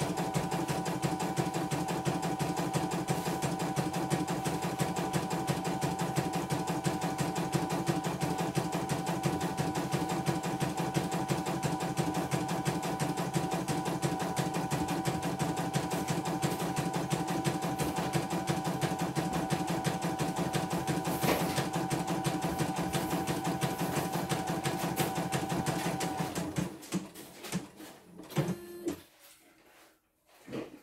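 Computerized embroidery machine stitching a design: fast, even needle strokes over a steady motor whine, running without trouble on its final test after a repair for rough, grinding rotation. It stops near the end, leaving a few light clicks.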